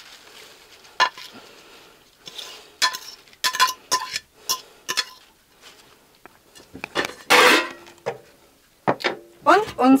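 A spoon clinking and knocking against a bowl and pan as baby spinach is scraped into the pan, in a series of separate clinks with a brief louder scrape about seven seconds in.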